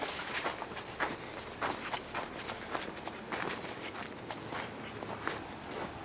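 Footsteps: irregular soft steps over a steady background hiss.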